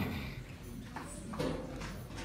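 A few irregular hollow knocks and clicks over a low background rumble, no music yet.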